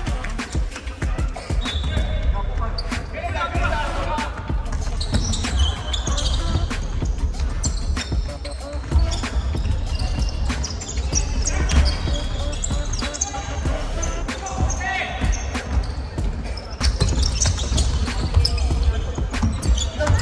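Basketball bouncing repeatedly on a hardwood gym court during a game, with players' voices in a large, reverberant hall.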